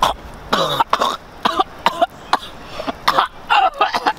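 A young man coughing hard over and over, about eight short harsh coughs in four seconds, some trailing off with a falling, strained voice.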